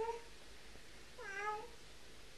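A single short, high-pitched call about a second and a quarter in, falling slightly in pitch, much like a cat's meow, heard faintly.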